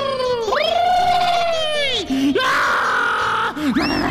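Drawn-out, exaggerated cartoon cries: a long call that rises and falls in pitch with a wavering quiver, followed by a shorter, higher held wail and a falling glide near the end.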